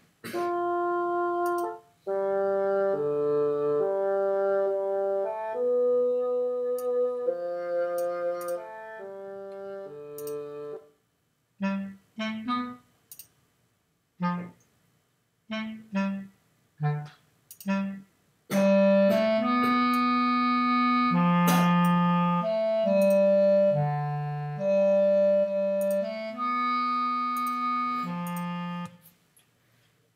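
Playback of a multi-part orchestral sketch from the NN-XT sampler in Reason: sampled strings with a woodwind line, first bassoon and then bass clarinet patches. Sustained notes give way about a third of the way in to a run of short, separated notes, and a louder, fuller passage of held chords follows, stopping shortly before the end.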